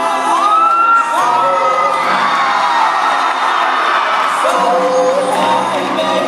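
Live band music with singing, the audience cheering and whooping over it in the first half, and the sung lines coming back in near the end.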